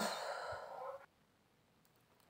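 A long breathy sigh lasting about a second, which cuts off abruptly.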